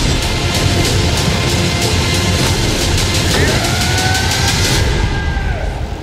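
Film trailer soundtrack at its climax: loud, dense music with a fast, steady percussive beat. A sustained tone enters about halfway through, and the sound thins out near the end.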